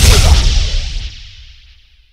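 Movie-style explosion sound effect: a sudden blast that opens into a deep rumble and dies away over about two seconds.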